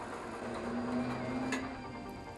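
BetaMax Maxial scaffold hoist's motor running as it winds the wire rope and lifts the loaded platform up the track: a low, steady hum, with a short click about a second and a half in.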